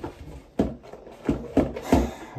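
Handling noise as a playing card is drawn from a bag: a few short rustles and knocks, about half a second apart.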